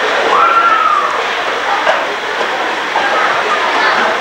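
Steady background babble of many distant voices with a general rumble of outdoor noise. About half a second in, one long high call rises and then falls away.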